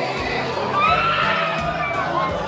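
Women wailing in grief for the dead, long high drawn-out cries that rise and waver about a second in, over the noise of a crowded room.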